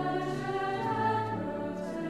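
Choir singing an Advent hymn in sustained notes, the voices moving to new pitches twice.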